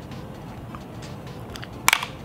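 Flathead screwdriver prying at the clips of a plastic dashboard air vent: a few faint ticks, then one sharp plastic click near the end.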